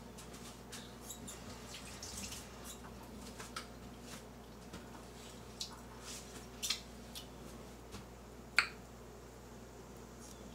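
Faint, scattered wet clicks and smacks of someone eating grapefruit and pulling its juicy segments apart, with one sharper click near the end.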